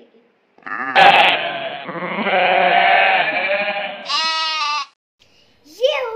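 Goat bleating, several calls over about four seconds, with a sharp click about a second in.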